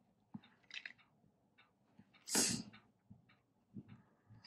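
Faint scattered clicks and light taps as fingernails and fingertips handle tarot cards on a cloth-covered table. One louder, short breathy rush of noise comes a little after two seconds in.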